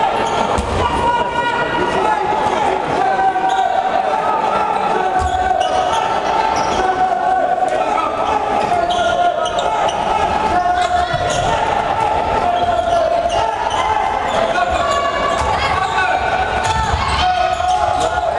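A handball bouncing on a wooden sports hall floor, with spectators' voices echoing around the hall.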